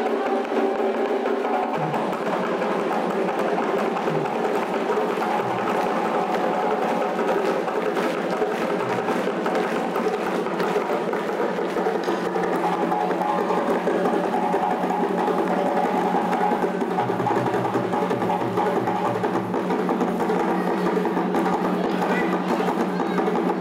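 West African djembé drum ensemble playing a dense, steady rhythm of sharp hand strokes and slaps.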